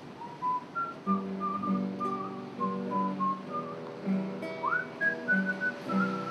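Classical guitar picking a repeating accompaniment while a melody is whistled over it, the whistle sliding up into a higher note about two-thirds of the way through.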